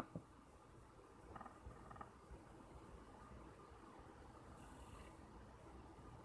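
Near silence: faint low room hum, with a single short click at the very start.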